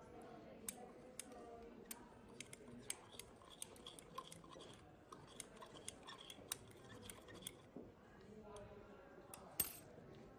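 A glass stirring rod clinking against the inside of a glass beaker while stirring baking soda into water: quick, irregular light clinks for several seconds, then a single louder clink near the end.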